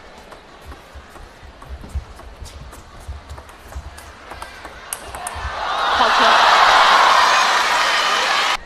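Table tennis rally: the ball clicking sharply off bats and table in quick succession. The point ends and the crowd bursts into loud cheering and applause about five and a half seconds in, swelling and then cutting off abruptly.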